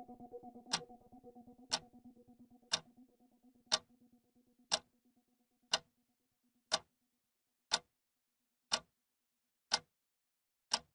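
Clock-like ticking, one sharp tick each second, keeping an even pace. Beneath it a low held musical note fades away over the first six seconds or so, leaving the ticks alone.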